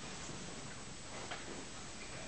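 A single faint click on the laptop, a key or mouse button, a little past halfway, over a steady room hiss.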